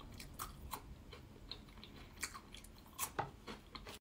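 Faint, scattered crisp crunches of a bare Kit Kat wafer, its chocolate layer stripped off, being bitten and chewed, a little louder near the end.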